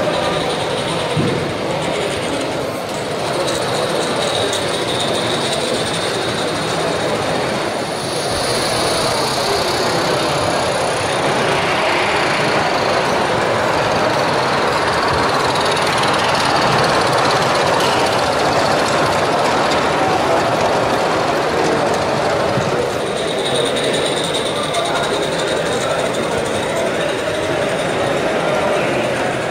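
16mm-scale narrow-gauge model trains running on a garden-railway layout, heard against a steady background din in a busy exhibition hall.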